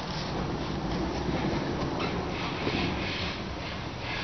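Steady background rumble and hiss with no distinct event and no clear knocks or tones.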